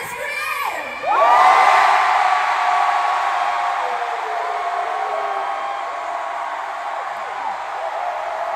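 Stadium crowd cheering and screaming, surging suddenly about a second in to many high-pitched held screams, then easing off slightly while staying loud.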